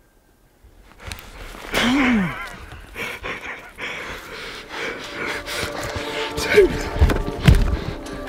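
Men's excited whoops and laughter with heavy breathing: a loud rising-and-falling shout about two seconds in and falling cries near the end, over rustling and crunching as the hunters move through dry brush.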